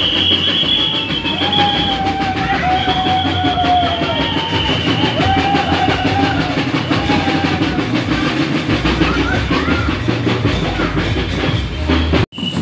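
Steady percussion drumming from a street procession, with a high steady tone held twice in the first few seconds.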